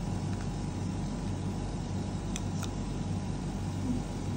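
Steady low mechanical hum with a noisy haze over it, and two faint clicks a little past halfway.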